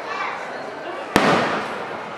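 An aerial firework shell bursting with a single sharp bang about a second in, followed by a trailing echo. People are talking in the background.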